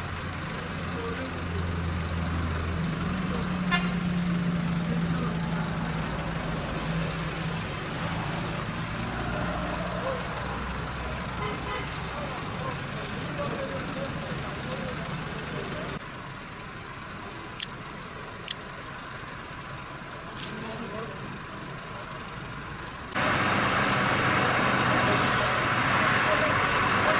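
Outdoor roadside sound of vehicle engines and road traffic, with indistinct voices in the background. A steady low hum runs through the first half, a couple of sharp clicks come in a quieter stretch, and the sound jumps abruptly in level at cuts.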